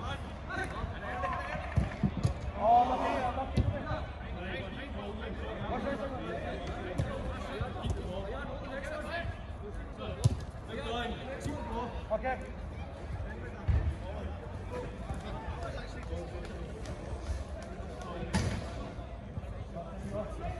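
Five-a-side football in play: players' shouts and calls over a steady background hubbub, with several sharp thuds of the ball being kicked scattered through.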